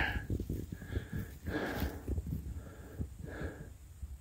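A man breathing in several short, faint puffs close to the microphone, with light rustling underneath.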